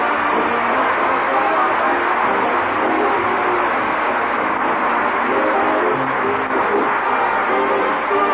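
Orchestra playing an instrumental number, strings and brass sounding together steadily, from a 1940s radio broadcast.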